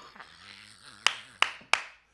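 A man clapping his hands three times in quick succession, about three claps a second, while laughing; faint laughter comes before the claps.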